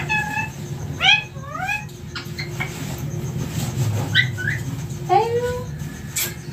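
Indian ringneck parakeet giving several short calls that glide up and down in pitch, over a steady low hum.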